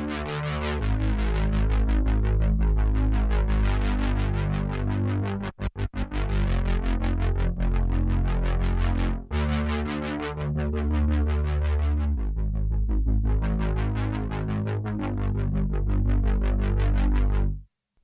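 Behringer Poly D analog synthesizer playing a simple looped line of low notes, its tone brightening and darkening as the filter and envelope knobs are turned. The sound cuts off suddenly just before the end.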